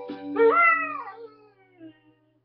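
Vizsla dog howling along to a mandolin: one howl that rises and then falls in pitch, fading out after about a second, over a last mandolin note that rings and dies away.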